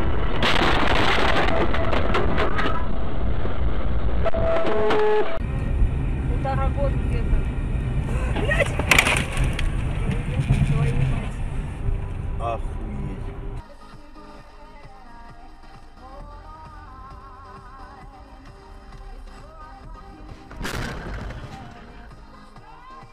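Dashcam audio of a car on the road: loud road and engine noise with a sudden loud bang about nine seconds in. After about fourteen seconds, quieter background music with a beat takes over.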